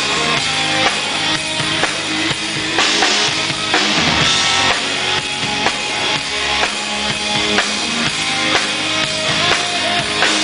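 Live rock band playing an instrumental passage: electric guitars over a drum kit keeping a steady beat.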